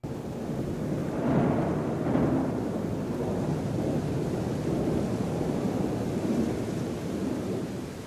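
Recorded thunderstorm sound effect: a steady rush of rain with rumbling thunder, starting suddenly out of silence. The thunder swells loudest about a second and two seconds in.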